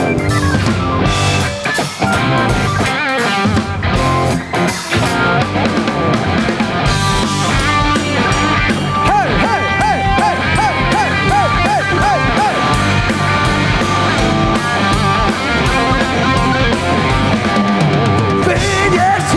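Live blues-rock band playing an instrumental passage: electric guitar over drum kit, bass guitar and keyboard. From about nine to twelve seconds in, the guitar bends one note up and down over and over, about eight times.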